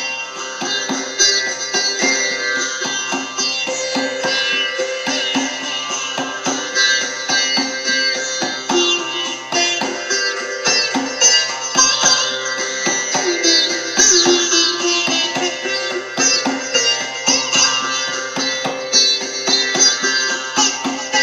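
Sitar played live: a fast run of plucked notes ringing over a steady drone.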